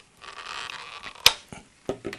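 Plastic housing of an AVM FRITZ!DECT 210 smart plug handled in the hands: faint rubbing and scraping, with a sharp click about a second in and a shorter click near the end.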